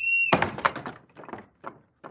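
A brief high whistle-like tone, then a loud thump that repeats about three times a second and fades away like an echo.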